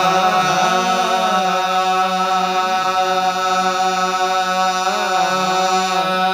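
Qawwali singing: a male lead voice drawing out wavering, ornamented phrases over a steady held harmonium drone, with no drum strokes.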